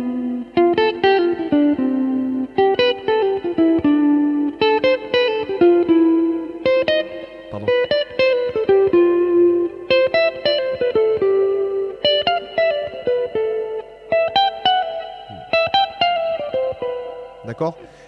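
Electric guitar playing one short melodic motif over and over in the same rhythm: a quick run of plucked notes, then a held note left to ring, about every two seconds, each repetition starting on a different pitch.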